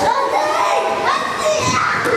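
Several children talking and calling out over one another, a busy mix of overlapping kids' voices.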